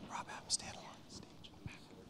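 Hushed, whispered speech picked up by the podium microphone, with a sharp hiss of a sibilant about half a second in.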